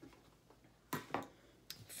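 A few light taps and clicks of craft things being handled and set down on a tabletop: two close together about a second in, and another near the end.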